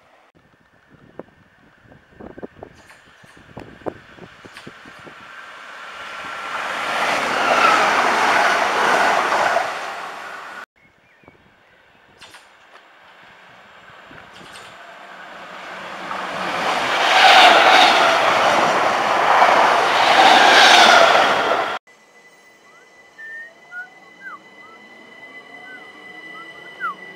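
Electric multiple-unit trains running into the station: twice a rush of wheel-on-rail and motor noise builds over several seconds to a loud peak and is cut off abruptly. Near the end a quieter steady high whine with short squeaks comes from an electric unit at the platform.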